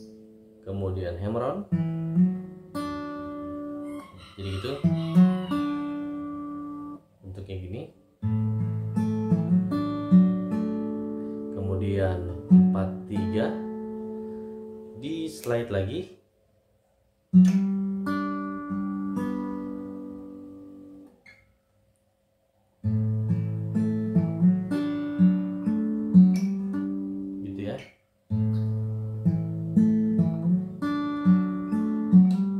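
Acoustic guitar fingerpicked, plucking arpeggiated chords in a series of short phrases, with a few brief pauses where the notes ring out and stop.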